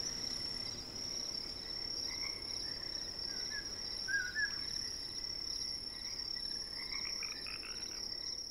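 Night forest ambience: a steady, high, pulsing cricket trill, with a few short chirping calls from another animal about three to four seconds in and again near the end.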